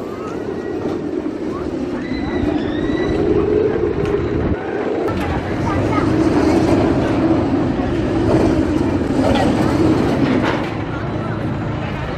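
Gerstlauer spinning coaster car rolling along its steel track, a continuous rumble that swells in the middle and eases near the end.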